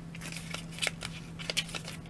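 Hands handling a small cosmetic box and its packaging: a few short clicks and light crinkles, over a faint steady low hum.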